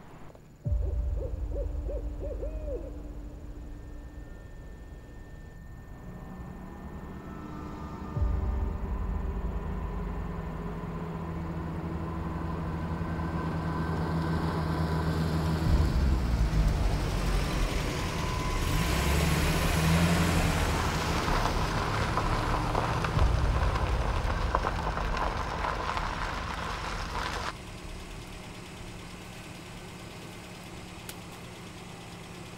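Box truck's engine running as the truck drives, a heavy low rumble that starts suddenly, builds through the middle and cuts off abruptly near the end.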